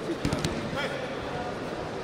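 Judoka thrown onto the tatami: a quick run of heavy thumps as bodies hit the mat, about a quarter to half a second in, over the steady murmur of an arena crowd.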